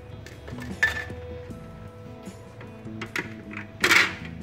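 Background music with a few light knocks, then a sharp plastic clack near the end as a second clear plastic bowl tier is set onto the electric steamer.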